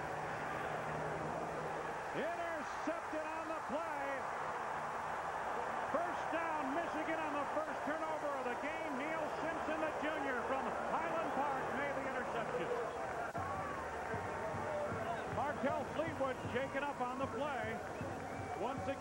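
Large stadium crowd cheering and yelling, many voices at once, as the home side intercepts a pass.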